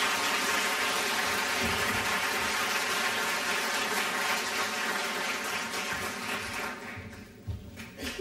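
Theatre audience applauding, dying away near the end.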